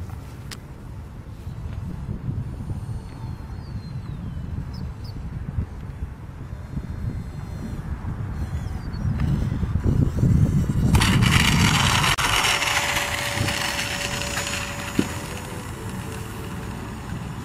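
Twin electric ducted fans of a radio-controlled model cargo jet heard over a low rumble of wind on the microphone. About eleven seconds in, as the plane comes in low to land, a loud rushing hiss starts suddenly, with a steady whine held under it to the end.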